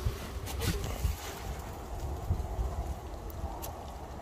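Wind rumbling on the microphone, with a few light splashes and clicks as a hand lowers a perch into the lake water to release it.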